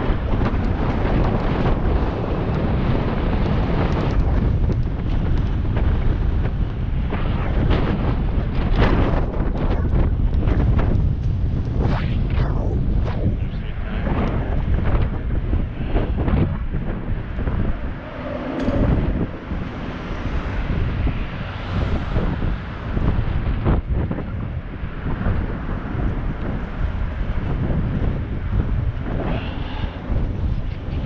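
Wind rushing over the microphone of a moving bicycle's action camera, a continuous low rumble with many short gusts and knocks.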